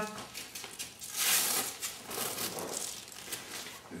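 Nylon strap and Velcro being pulled tight and fastened around a freestanding punching bag, making rustling, crinkling scrapes. The loudest comes about a second in.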